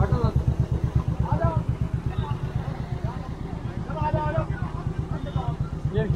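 Motorcycle engine idling close by, a steady rapid low pulse, with people talking over it.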